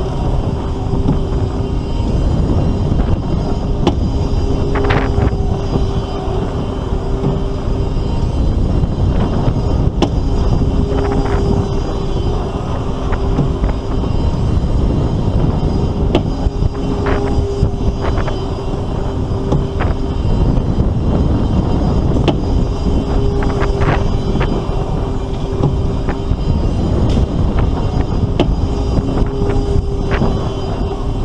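Paratrooper amusement ride in motion: wind rushes over the rider's microphone as the seat circles. A steady two-note hum from the ride fades in and out about every six seconds.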